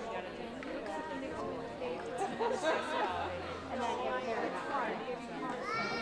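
Many people chatting at once in a large room, an indistinct hubbub of overlapping voices.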